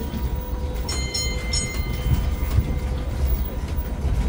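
Open carriage of a tourist road train rolling over cobblestones: a steady low rumble, with a brief high squeal about a second in.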